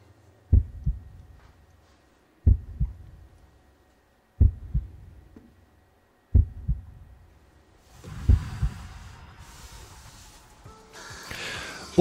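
A heartbeat sound effect: five low double thumps, evenly spaced about two seconds apart. From about eight seconds in, a hiss rises underneath and fades before the end.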